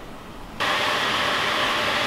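Low room tone, then a steady, even rushing noise, like a blower or fan, cutting in abruptly about half a second in.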